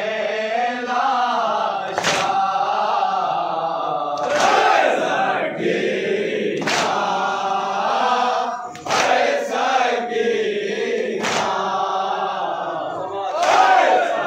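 A group of men chanting a noha (Shia lament) in unison, with sharp slaps of chest-beating (matam) landing about every two seconds.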